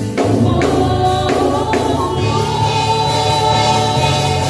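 Women singing gospel worship songs through microphones, a lead voice with backing singers, over amplified instrumental backing. A few sharp percussion hits fall in the first two seconds, then a long held note.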